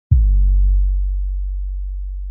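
A single deep electronic bass tone, like a sub-bass hit, starting sharply and slowly fading as a channel-intro sound.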